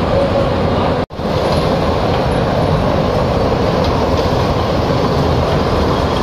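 Small kiddie train ride running on its circular rail track, a steady rumbling noise of the train in motion heard from on board. The sound drops out abruptly for an instant about a second in.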